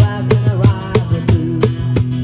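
Live acoustic guitar and cajon playing together, the cajon keeping a steady beat of about three strikes a second under strummed chords, with a man singing.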